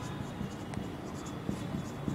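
Marker pen writing on a whiteboard: a series of faint, short, irregular strokes and ticks as letters are drawn.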